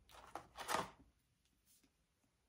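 Small reusable cup and its lid being handled and opened: a click, then a short scraping rustle about half a second in.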